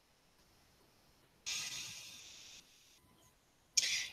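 A woman's audible breath during a paced breathing exercise: a soft, hissing exhale about a second and a half in that fades away over about a second, then a short, sharp intake of breath near the end.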